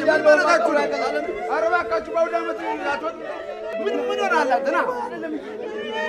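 Several voices wailing and crying out together, overlapping and rising and falling in pitch: a group mourning lament.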